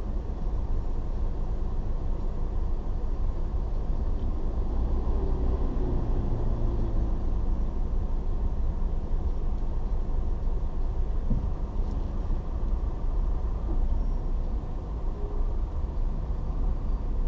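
Steady low rumble of slow-moving city traffic heard from inside a car through a dashboard camera: engines idling and creeping forward, with no sharp events.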